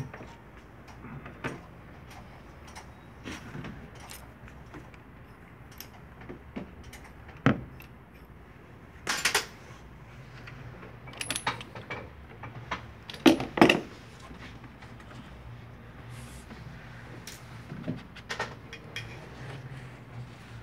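Hand tools and parts being handled in a car's engine bay during an oil-filter removal: scattered metallic clinks, knocks and rattles, with a short scraping rattle about nine seconds in and the loudest knocks around thirteen to fourteen seconds.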